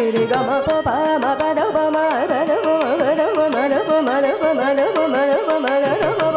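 Carnatic classical music: a woman's voice and a violin carry a melody full of quick gliding pitch ornaments, over a steady tanpura drone, with frequent sharp mridangam strokes.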